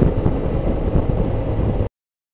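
Motorcycle riding noise: engine, tyre and road noise mixed with wind rushing over the microphone at speed. It cuts off suddenly to silence just before the end.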